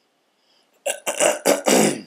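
A man's rough, throaty non-speech noise made close to the microphone: four short, loud bursts packed into about a second.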